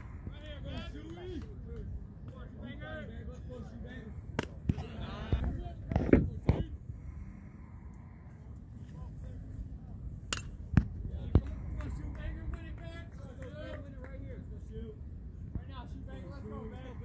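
Distant, indistinct voices of players and spectators calling out at a baseball game, over a steady low rumble of wind on the microphone. A few sharp pops cut through, the loudest about six seconds in and a quick cluster of three a little past the ten-second mark.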